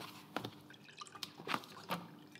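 Sheets of paper being handled at a desk, giving about five short, light clicks and taps.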